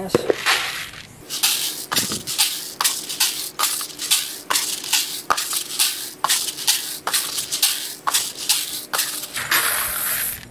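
Freshly roasted coffee beans poured from one bowl into another, rattling in quick repeated strokes about three a second, with a longer steady pour near the end. The beans are being poured between bowls to cool them and shed their chaff.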